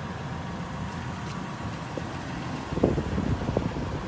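Wind buffeting the microphone: a steady low rumble, with a few short knocks about three seconds in.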